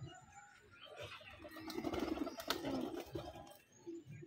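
Domestic pigeons cooing, with one sharp click about halfway through.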